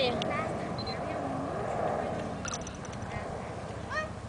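Outdoor background of faint voices over a steady hum, with a brief voice near the start.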